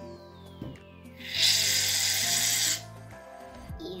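Aerosol can of shaving foam hissing as foam is sprayed into a glass bowl, one steady burst of about a second and a half.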